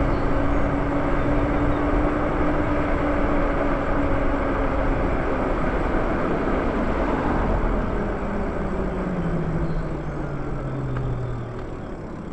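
Lyric Graffiti e-bike riding along: a steady rush of wind and tyre noise with a faint electric-motor whine, whose pitch slides down in the second half as the bike slows.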